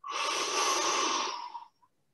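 A long, deep inhalation lasting about a second and a half, drawing air into the belly. It is the first stage of a freediver's three-part breath (belly, then chest, then throat), taken to fill the lungs as fully as possible before a breath-hold.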